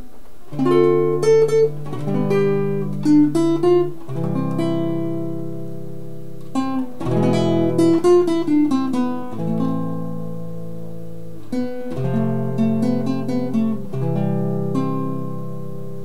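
Nylon-string classical guitar played fingerstyle: a slow hymn melody over ringing partial chords, D minor 7th, F and C among them, changing every second or two.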